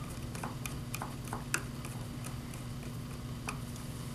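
Faint, irregular clicks and ticks of a small screwdriver working a screw terminal on a plug-in terminal block, tightening a wire lead, over a low steady hum.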